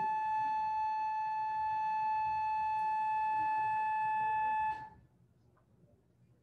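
A single steady electronic beep tone, held for about five seconds at an unchanging pitch and then cutting off abruptly.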